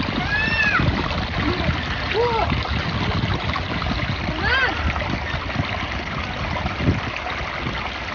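Shallow water pouring over a small concrete step, a steady splashing rush.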